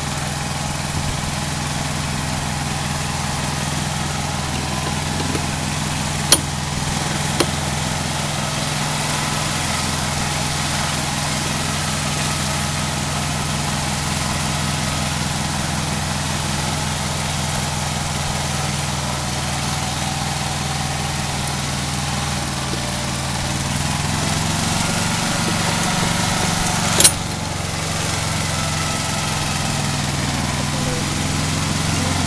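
Small diesel tractor engine of a Satoh Beaver running steadily under load while it tows a four-wheeler on a chain, its note rising slightly near the end. A few sharp knocks cut in, the loudest about 27 seconds in.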